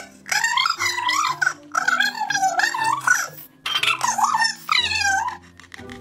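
A very high-pitched cartoon character voice laughing "bwa-ha-ha-ha" and saying "and I would have gotten away with it too", over light background music.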